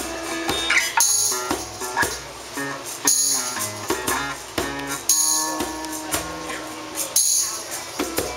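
Live acoustic guitar strumming with a drum kit keeping time, and a bright cymbal-like shimmer about every two seconds; no vocals in this stretch.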